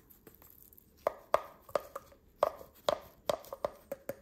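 Small plastic bottle tapping against the mouth of a small glass jar as white powder is shaken out, a run of sharp taps with a short glassy ring, starting about a second in.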